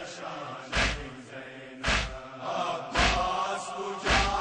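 Male voices chanting a Shia nauha (mourning lament), kept in time by a heavy slap of chest-beating (matam) about once a second.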